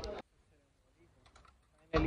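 The end of a man's word is cut off, then near silence with a few faint clicks a little past halfway through.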